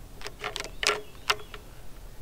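Plastic felt-tip markers being gathered up, clicking against each other and the wooden tabletop: about five short, sharp clicks.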